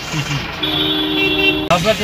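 Vehicle horn held for about a second in city traffic: one steady two-note chord that cuts off abruptly near the end.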